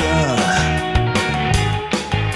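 Instrumental passage of a live indie rock band: electric guitar, bass and drum kit playing a steady beat, with one line sliding down in pitch shortly after the start.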